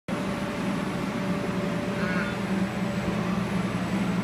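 Inflatable bounce house's electric air blower running with a steady drone.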